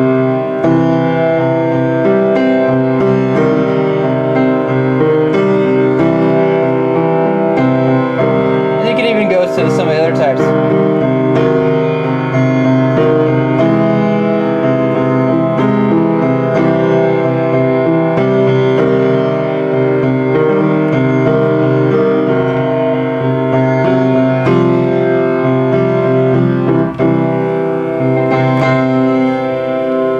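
Keyboard playing a sequence of held chords that change every second or so, switching back and forth between major and minor triads.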